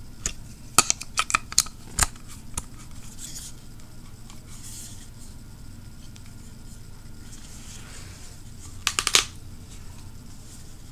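Small, hard plastic clicks and knocks from GoPro mount parts being handled and fitted together. A quick run of clicks comes in the first two and a half seconds, then a quiet stretch, then another short cluster near the end.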